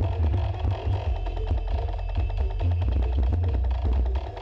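Dance music played very loud through a truck-mounted "sound horeg" sound system, dominated by a heavy, booming bass line under a steady, fast percussion beat.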